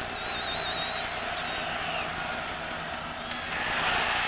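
Steady crowd noise from a large college-football stadium crowd. A high wavering whistle tone sounds over it and stops about a second and a half in.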